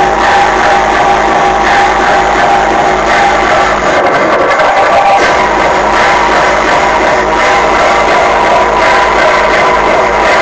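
Loud electronic dance music, free-party tekno, played through a stack of speaker cabinets heard up close.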